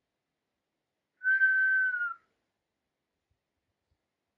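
A single whistle held steady for about a second, its pitch dipping slightly at the end: a recall whistle to call a dog back.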